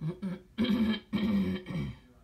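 A person clearing their throat: two short catches, then two longer voiced rasps about half a second apart.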